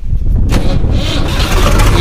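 Swaraj tractor's diesel engine, cranked by its starter on a freshly fitted 100-amp-hour battery, catching about half a second in and then running steadily. It starts easily: the new battery has enough charge to turn it over.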